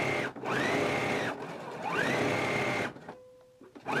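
Domestic sewing machine stitching a seam in runs of about a second: each time the motor whine rises in pitch as it speeds up, holds steady, then drops as it stops. It pauses briefly near the end before starting again.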